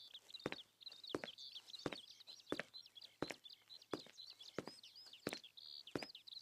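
Footsteps walking at a steady pace, about one step every 0.7 seconds, over a bed of small birds chirping continuously. Both sounds are quiet.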